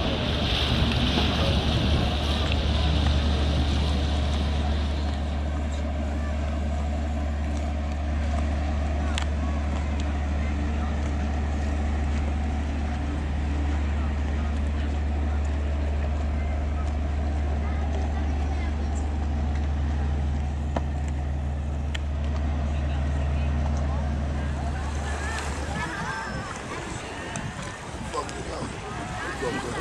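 Steady low drone of a boat's engine heard from on board, with wind and water noise over it. The drone stops shortly before the end as the sound changes to a busier open-air mix with voices.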